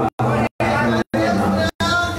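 A man's voice amplified through a handheld microphone and PA, cutting in and out abruptly several times.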